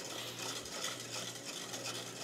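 Wire whisk stirring thin béchamel sauce in a stainless steel saucepan, a continuous swishing that rises and falls with the strokes. The stirring keeps the sauce from scorching at the bottom as it thickens over heat.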